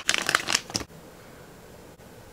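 Clear plastic cosmetics pouch crinkling as it is opened by hand, a quick run of crackles that stops after under a second.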